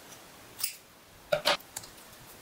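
Small curved scissors snipping through double-sided tape stuck on a paper cut-out: a softer snip past the half-second, then two sharp snips in quick succession just after the middle.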